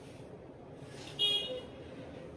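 A brief high-pitched toot or beep about a second in, over a steady low background hum.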